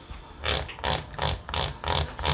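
A person laughing in short, breathy pulses, about three a second.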